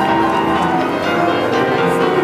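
Grand piano played solo in boogie-woogie style: a dense, unbroken stream of notes and chords.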